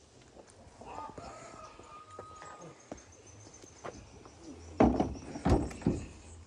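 Two hollow knocks a little under a second apart as an empty plastic crate is set into a pickup truck's bed.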